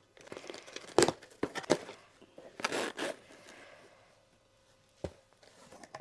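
Packing tape on a cardboard shipping box being pierced with a pen and torn open: a few sharp snaps about a second in, then a short rip with cardboard rustling, and a single tap near the end.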